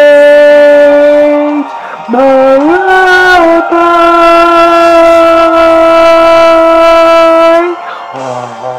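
A man singing long held vowel notes: one note for about a second and a half, then, after a short break, a note that slides upward and is held steady for about five seconds before stopping just before the end.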